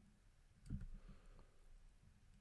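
Near silence, with a few faint clicks about three quarters of a second in from a stylus on a drawing tablet during handwriting.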